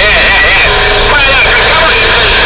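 CB radio on channel 11 receiving distant skip stations: garbled, warbling voices over heavy static. A steady tone joins about two-thirds of a second in.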